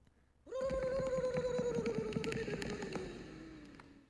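A person's voice doing a pigeon impression: one long, rapidly fluttering trilled note that starts about half a second in, slowly falls in pitch and fades away.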